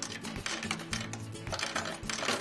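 Cassida C200 coin sorter running, with a rapid, dense clatter of coins clicking as they are sorted and drop into the paper-wrapped coin tubes. Background music plays underneath.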